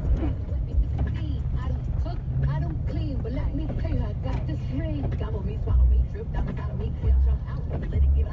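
Car cabin noise while driving on a wet road: a steady low engine and tyre rumble, with low thumps about every second and a half in the second half.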